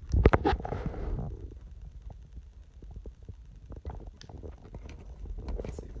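Scattered light clicks and a low rumble of handling noise while the handheld radio and SWR meter are worked.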